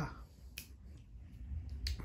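Two short sharp clicks about a second and a quarter apart, over a low rumble.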